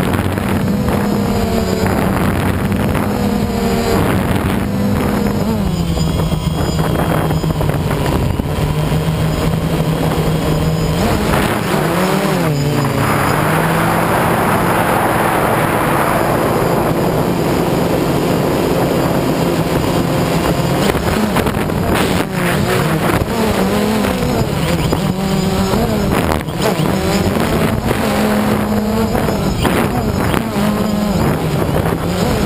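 DJI Phantom quadcopter's motors and propellers whining in flight, heard close up from its onboard camera, the pitch rising and falling as the motors change speed. A rush of noise swells for a few seconds about halfway through.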